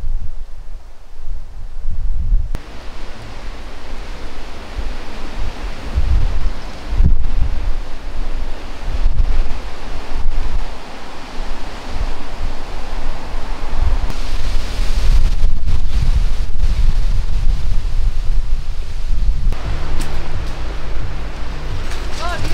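Wind buffeting the microphone in uneven gusts over a steady wash of sea surf on the shore.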